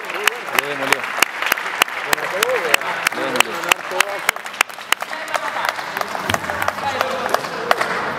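Spectators clapping in a steady rhythm, about three to four claps a second, with shouting voices over it; the clapping thins out near the end.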